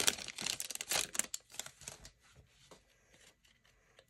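A foil trading-card pack wrapper crinkling and tearing open in a quick run of rustles, dying away after about a second and a half into faint handling of the cards.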